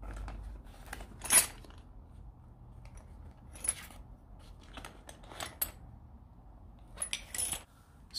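Small metal hand tools clinking and rustling as they are handled in a vinyl motorcycle tool bag, in a few separate clinks: about a second in, near four seconds, twice around five and a half seconds, and a cluster near the end.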